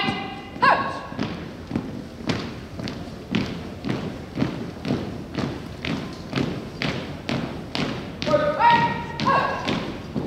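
A drill team's marching footsteps stamp on a hardwood gym floor in a steady beat, about three strikes a second. A drill commander's drawn-out shouted commands come in the first second and again near the end.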